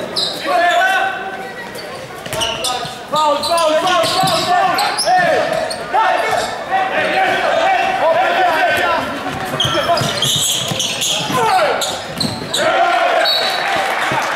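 Handball play on a wooden indoor court: the ball bouncing, shoes squeaking and players calling out, echoing around a large sports hall.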